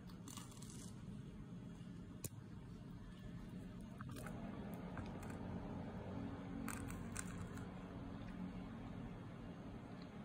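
Breadcrumb-coated fried bread (kariman) pulled apart by hand, with a few short crackles from the crumb crust over a low steady hum.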